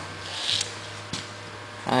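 Steady low hum with a brief soft rustle and one light click; a man starts speaking at the very end.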